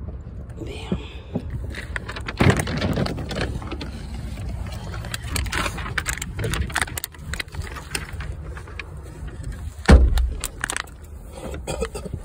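Rustling, clicks and knocks of someone moving about inside a car cabin, over a low rumble, with a heavy thump about ten seconds in and some muffled talk.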